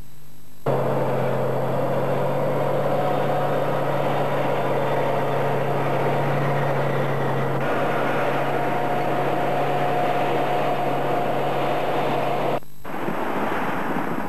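Heavy tracked vehicle, likely a tank, with its engine running steadily under a constant low hum and broad mechanical noise. It starts abruptly about half a second in, shifts slightly a little past halfway, and cuts off suddenly near the end.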